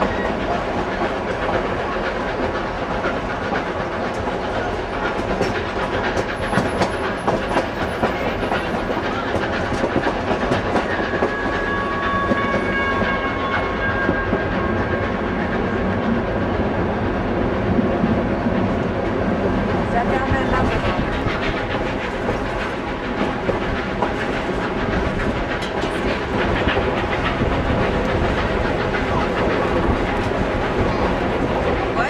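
Durango and Silverton narrow-gauge passenger train running along the track, heard from aboard a coach: a steady rumble from the wheels and running gear with many small rail clicks throughout.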